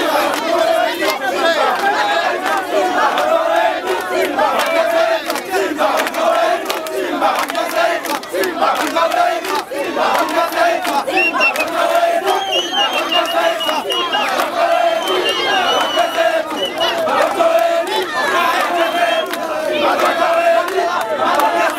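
A large, loud crowd of football fans, many voices calling out at once and overlapping with no break.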